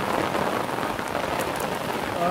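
Heavy rain falling steadily on stone masonry, an even hiss with a few sharper drop hits.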